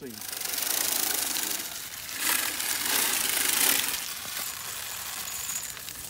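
Hand-cranked chest-mounted broadcast spreader spinning and flinging seed, a rapid steady whirring rattle that is louder in two stretches and eases over the last couple of seconds.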